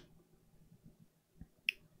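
Near-silent room tone with a single short, sharp click about three-quarters of the way through.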